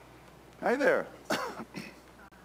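A person coughing and clearing their throat: two short voiced bursts about half a second apart, the first the loudest.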